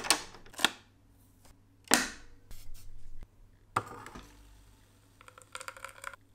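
Capsule espresso machine being worked by hand: a few sharp plastic clacks as its lever is lifted and pressed shut on a capsule, then near the end a short buzzing hum as the pump starts pushing espresso through.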